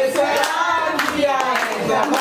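Hands clapping along while several women's voices sing a birthday song.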